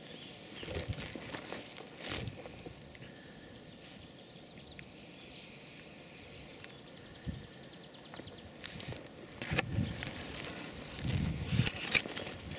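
Footsteps and rustling through matted dry grass, in scattered bursts that come thicker near the end, over quiet outdoor background.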